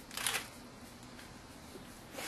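A brief rustle near the start, then faint steady room noise.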